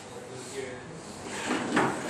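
Voices in a classroom, as if students are calling out answers, rising to a louder burst near the end.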